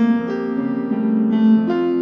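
Grand piano playing a slow descending line of two-note intervals, the opening of a melody built from descending sixths (C–A, B–G, A–F). Each pair is struck and left ringing into the next.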